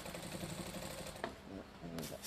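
Industrial sewing machine stitching steadily at a rapid rate as fabric is moved freely under the needle in free-motion quilting.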